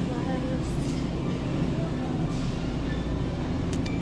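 Steady low mechanical hum of an open-front refrigerated display case, with faint voices in the background.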